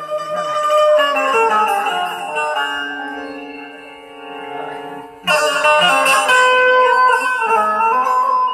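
Indian banjo (bulbul tarang), a keyed, plucked string instrument, playing a melody on held notes. About five seconds in, the playing comes in suddenly louder and brighter.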